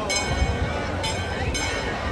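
Crowd hubbub: many people talking at once in a steady murmur, with a few brief sharp high-pitched sounds.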